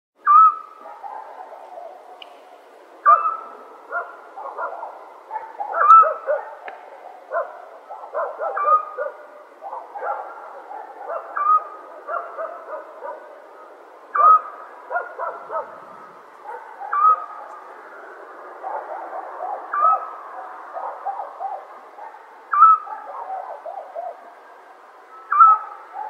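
Night-time countryside animal calls: one clear call repeats about every three seconds over a dense chorus of many shorter overlapping calls.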